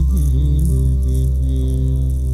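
Live band music: a deep sustained keyboard chord sets in at once and holds steady, with a shaker-like rattle over it for about the first second.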